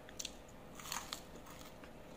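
Faint crisp crunches of a fried dried anchovy (dilis) being bitten and chewed, a few short crunches, most of them about a second in.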